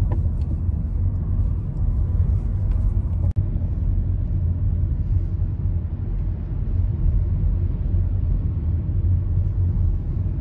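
Car driving, heard from inside the cabin: a steady low road and engine rumble. It drops out for an instant about a third of the way in.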